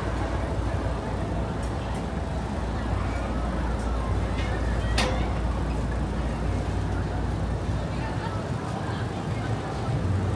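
City street ambience: a steady low rumble of traffic with indistinct voices of passers-by, and a sharp click about halfway through.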